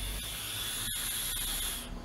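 An electronic cigarette being drawn on: a steady hiss of air and vapour through the atomizer, lasting nearly two seconds and stopping just before the end.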